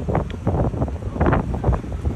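Wind rumbling on a handheld microphone, with irregular short gusts and buffets several times a second.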